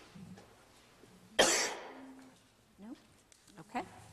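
One short, loud cough from a person about a second and a half in. A few faint, brief vocal sounds follow near the end.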